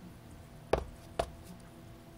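Two sharp knocks about half a second apart: a plastic soda bottle being set down on a hard surface.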